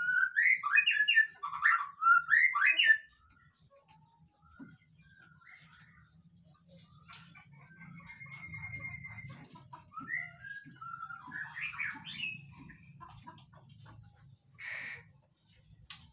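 Young male white-rumped shama singing short whistled phrases that slide up and down in pitch, loudest in the first three seconds, then softer whistles with one held note and another run about ten to thirteen seconds in. A faint low rumble sits under the middle part.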